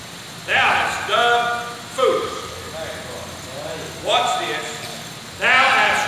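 Speech only: a man preaching in loud phrases with short pauses between them.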